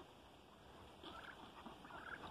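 Near silence with a few faint, short calls from fowl about a second in.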